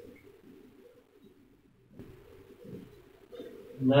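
Faint, low bird cooing, of the pigeon or dove kind, in the background.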